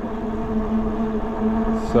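ENGWE L20 e-bike riding on throttle at a steady speed: the electric motor gives a steady, unchanging whine, over rolling noise from the knobby 20 x 4 inch fat tyres on pavement.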